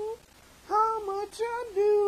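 A voice singing a wordless tune in a high register: one held note ending just after the start, a pause of about half a second, then several short sung notes.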